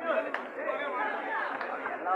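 Several people's voices talking over each other, too mixed to make out words, with one short sharp tap about a third of a second in.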